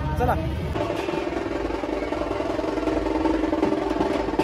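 Procession drumming, a fast continuous roll with a sustained tone behind it, starting about a second in after a few spoken words.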